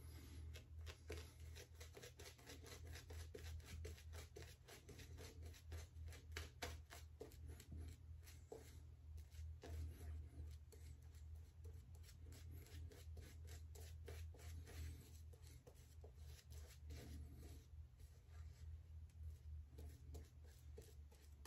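Simpson's Trafalgar T2 shaving brush working lather on the face: faint, quick scrubbing strokes over a low steady hum.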